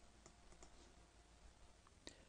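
Near silence: room tone with a few faint clicks spread through it.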